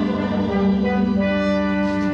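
Orchestral music with brass holding sustained chords, new notes entering about halfway through.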